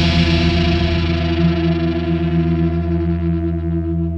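A sustained electric guitar chord, treated with chorus and other effects, left ringing and slowly dying away after the full band stops at the end of an alternative metal song.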